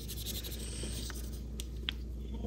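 Paintbrush stroking and dabbing acrylic paint onto gesso-primed mixed media paper: a faint, scratchy brushing with a few light ticks in the second half, over a steady low room hum.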